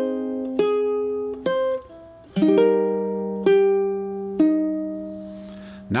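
Ukulele played slowly in a C minor chord melody. Two single plucked notes about a second apart are followed by a fuller strummed chord a little over two seconds in, then two more single notes, each left to ring and fade.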